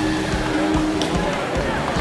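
Busy arena sound during a robotics match: music over the PA mixed with a motor-like whirring from the competing robots, and one sharp click about a second in.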